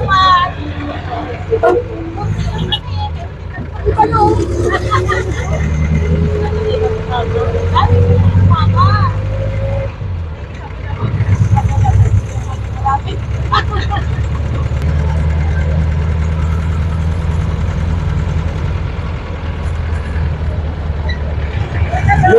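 Jeepney engine and road noise heard from inside the open rear passenger cabin: a loud, steady low rumble that eases briefly about ten seconds in and then builds again, with a whine that climbs in pitch for several seconds in the first half.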